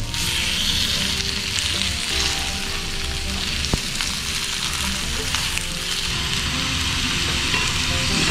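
Thin slices of beef sirloin sizzling steadily on a hot ceramic grill plate (tōban-yaki) as they are laid on and turned with chopsticks.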